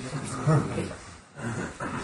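A man's voice, quieter than normal talk, in two short vocal bursts about a second apart.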